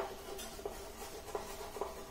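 Chalk writing on a blackboard: a sharp tap as the chalk meets the board, then a run of short scratching strokes as the words are written.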